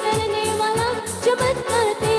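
A woman singing a Hindi Christian worship song, holding long notes, over instrumental backing with a steady drum beat about twice a second.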